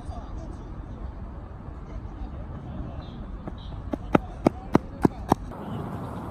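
Open-air ballfield ambience with a steady low wind rumble on the microphone and faint distant voices. About four seconds in come five sharp smacks in quick, even succession, about three a second.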